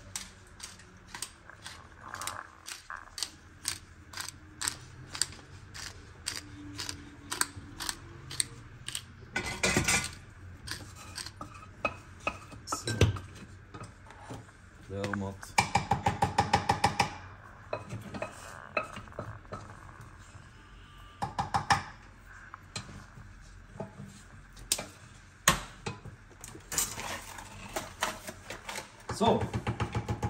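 Hand-turned pepper mill grinding over the dish, a regular run of dry clicks about three a second for the first nine seconds or so. After that come scattered kitchen knocks and clatter, with a quick rattling run of clicks a little past the middle.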